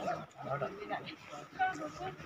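Indistinct voices of people talking, with no clear words.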